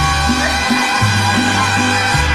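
Mariachi band playing an instrumental passage of a ranchera, with no singing: held melody lines over a bass that steps from note to note.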